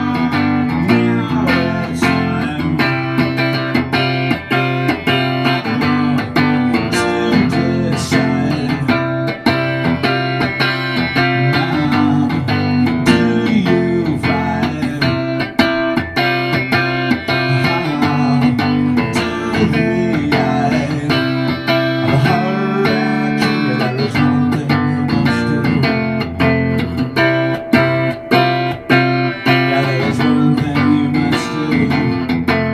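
Electric guitar played live through an amplifier, strummed and picked in an instrumental passage of a rock song.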